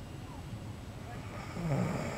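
A sleeping man snoring, with one louder, raspy snore near the end.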